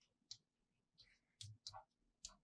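Faint, quick taps and scratches of a pen or chalk on a blackboard as a word is written, about half a dozen short strokes at uneven intervals.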